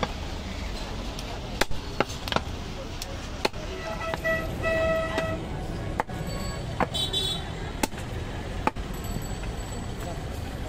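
Cleaver chopping through a goat leg: sharp separate strikes at an uneven pace, roughly one a second, over steady street traffic noise. Two short horn toots sound near the middle.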